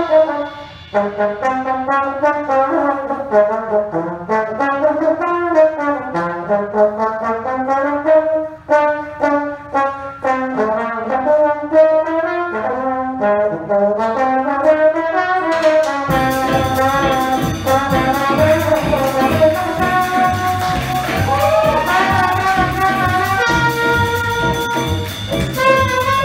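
Big-band trombone solo: one slide trombone plays a flowing melodic line with little behind it. About two-thirds of the way through, the full band of brass, saxophones and rhythm section comes in loudly under it.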